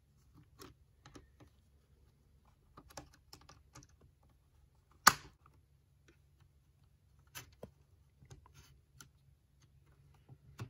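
Plastic bottom cover of an MSI GL73 gaming laptop being pried open with small flathead screwdrivers: scattered small plastic clicks as the tips work along the edge, with one loud snap about five seconds in as a retaining clip pops free.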